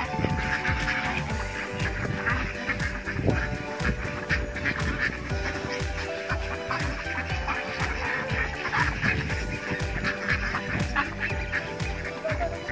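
A large flock of mallards and white domestic ducks quacking continuously, a dense overlapping clamour of many birds crowding around someone being fed.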